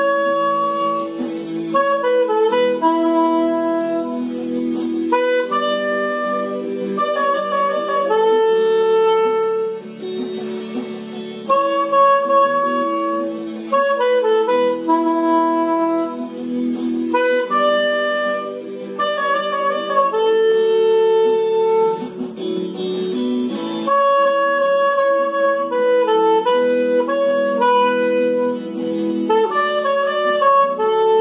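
Soprano saxophone playing a pop melody in phrases of held and stepping notes, with short breaths between phrases.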